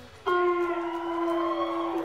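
Electric guitar through a Marshall amp: a single long, singing note that starts suddenly about a quarter second in and is held with a slight waver, stepping down to a lower note right at the end.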